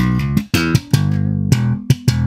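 A 1966 Fender Jazz Bass with Rotosound strings, recorded direct, playing a slap-and-pop funk line of sharp thumb slaps and popped notes. In the middle one held note wavers with vibrato.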